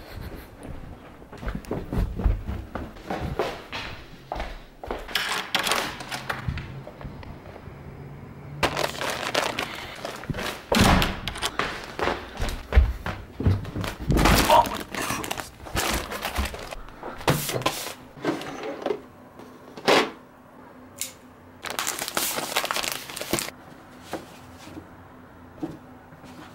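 A package of acoustic foam panels being handled and unpacked by hand: irregular thunks, knocks and crinkling of packaging.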